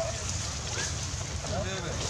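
Steady low wind rumble on the microphone, with a few short, faint calls about a second in and again near the end.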